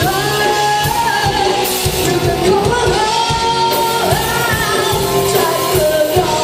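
A live rock band playing a song: a singer's lead vocal over electric guitars, bass guitar and drums.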